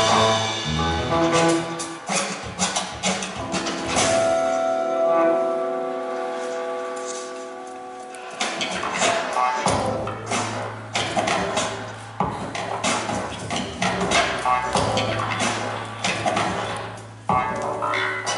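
Recorded dance music: a rhythmic opening, then held tones that fade away in the middle, and a beat with a steady bass line coming back in about nine seconds in, with a brief break near the end.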